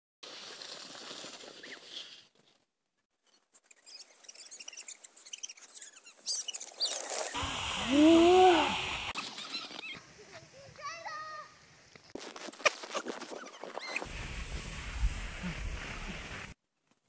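Excited voices squealing and calling out on sled rides over snow, in several short clips cut together. The loudest is a squeal that rises and then falls about eight seconds in, with a steady hiss under much of it.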